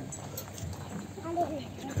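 Quiet outdoor background of a gathering, with a short, faint call about one and a half seconds in.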